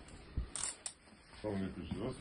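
Metal handcuffs being closed on wrists held behind the back: a dull thump, then sharp clicks about half a second in. A man starts speaking near the end.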